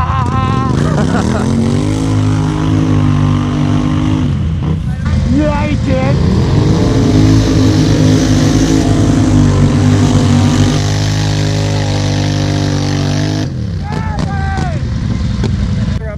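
ATV engine revving hard as the quad pushes through deep mud. The revs climb about a second in and hold high with a brief dip midway, then fall away near the end. Short shouts of voices come over it.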